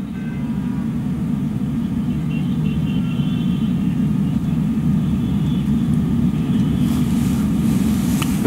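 Steady low rumble and noise on an open remote audio line, with no voice coming through: the sign of a connection problem with the guest's feed.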